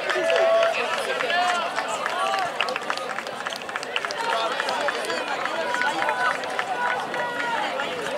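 Spectators' voices overlapping in conversation and calls, with no one voice standing out, at an outdoor sports field.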